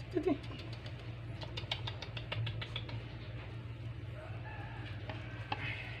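A puppy gives a short whine right at the start. It is followed by a run of faint quick clicks and taps for a few seconds, over a steady low hum.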